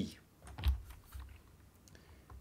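A handful of soft computer keyboard taps, the loudest just under a second in.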